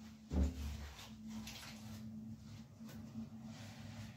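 A dull thump, then light rustling and scraping as dry twigs and paper are handled while a wood fire is laid in a brick barbecue hearth.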